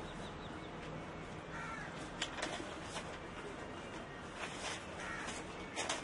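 Sheets of paper rustling and flicking as a stack of documents is leafed through by hand, over a steady low background, with a bird calling faintly about a second and a half in.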